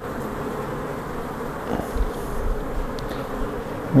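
Honeybees buzzing in a steady hum from an open, bee-covered queenless cell-builder colony.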